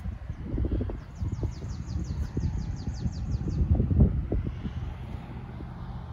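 Wind buffeting the microphone in an uneven low rumble, while a bird sings a rapid series of about a dozen short, high, downward-sliding notes, about five a second, from about a second in until just past the middle.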